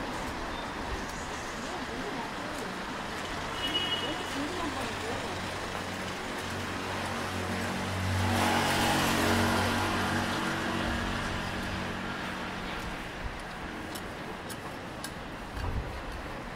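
City street traffic noise, with a motor vehicle passing close by: its engine hum and tyre noise swell from about seven seconds in, are loudest around eight to ten seconds, then fade.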